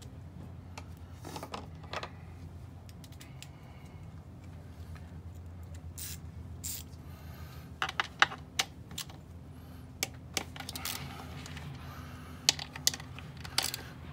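Scattered small clicks and taps of a hand tool on the fuel rail's hose fittings as the fuel line is loosened, coming in short clusters about eight seconds in and again near the end, over a steady low hum.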